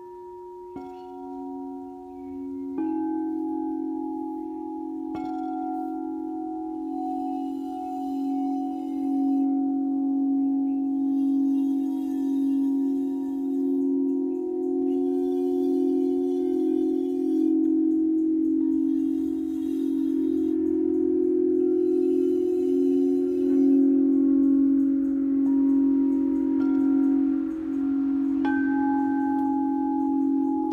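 Alchemy crystal singing bowls struck one after another with a wand, each joining in with its own pure tone. The tones ring on together and swell into a loud, sustained hum that pulses slowly, with more bowls sounded near the end.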